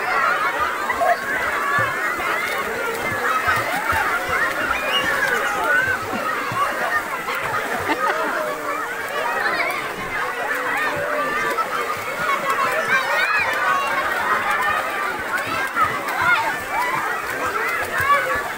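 Many voices of children and adults chattering and calling out at once, with water sloshing and splashing as the children swim.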